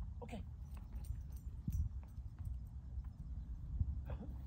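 Low wind rumble on the microphone, with a short high call about a third of a second in and a couple of soft knocks later on.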